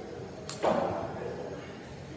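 A heavy ball slamming down about half a second in, a sharp smack and thud that echoes through a large warehouse gym.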